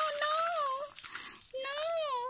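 A baby fussing, with two drawn-out, high-pitched whining cries, the second beginning past halfway, while a plastic toy rattle is shaken.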